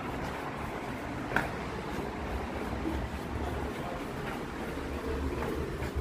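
Low steady rumble of road traffic and ambient noise, heard from a stairwell going down into a pedestrian underpass. A single short click comes about a second and a half in.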